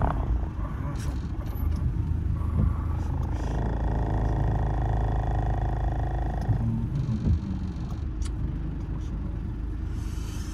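Steady low rumble of a car heard from inside its cabin while stopped. About three seconds in, a passing small truck adds a higher droning whine that lasts about three seconds and then cuts off.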